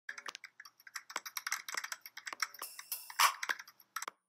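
Keys typing: a quick, irregular run of key clicks, several a second, with louder clacks a little after three seconds in.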